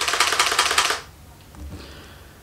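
Canon EOS 5 film SLR taking a picture: the shutter fires and the built-in motor winds the film on, a dense run of rapid mechanical clicks with a motor whir lasting about a second.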